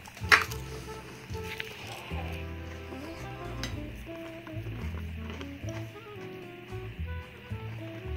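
Soft background music with held notes that step from one pitch to the next. About a third of a second in there is one loud, sharp crunch as a breaded fillet is bitten, with a few faint clicks later.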